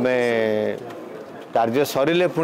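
A man's voice holding one long, level vowel, a drawn-out hesitation sound lasting under a second, then a short pause before he talks again.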